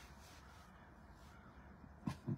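Near silence: faint low hum of room tone inside a parked car.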